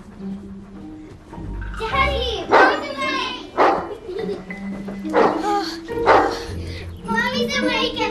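A dog barking several times in short, sharp barks over soft background music, with voices around it.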